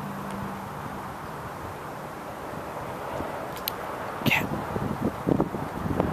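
Steady outdoor background noise like wind on the microphone, with a couple of faint clicks and a short higher-pitched sound about four seconds in.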